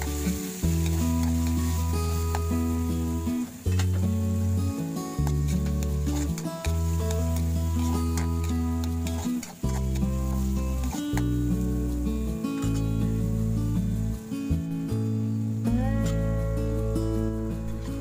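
Background music with sustained, changing notes, over the sizzle of diced tomatoes, onions and garlic sautéing in oil in a steel wok, with scattered clicks and scrapes of a metal spatula stirring them.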